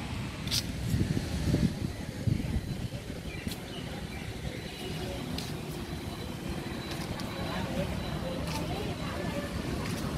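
Outdoor street ambience: a steady low rumble of road traffic with faint background voices.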